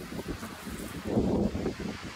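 Strong, gusty sea wind blowing across the microphone, with the noise of the sea behind it.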